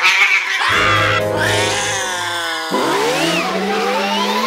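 A cartoon cat's loud, frightened scream over dramatic cartoon music. About three seconds in, a rising zoom-away sound effect follows, the comic sound of a character dashing off at speed.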